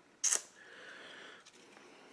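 A person's quick, sharp sniff about a quarter second in, followed by a softer breath lasting about a second.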